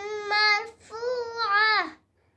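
A young girl reciting the Qur'an in a melodic chant, holding long notes. The chant breaks briefly just before a second in, and the next phrase falls in pitch and stops at the end.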